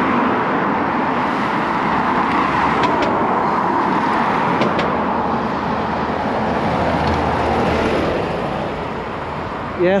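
Busy road traffic: cars passing in a steady wash of tyre and engine noise. A deeper engine rumble comes in from about five seconds in, as a double-decker bus goes by.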